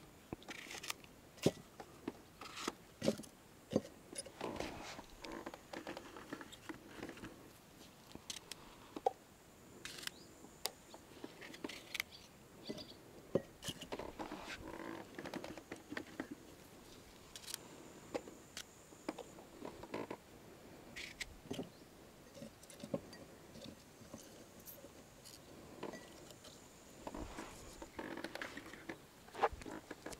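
Cucumbers being handled and trimmed with a knife: irregular sharp clicks and taps of the blade and the cucumbers knocking about. There is also rustling as cucumbers are taken from a plastic bucket.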